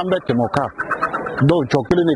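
A man's voice talking continuously: radio speech, with no other clear sound.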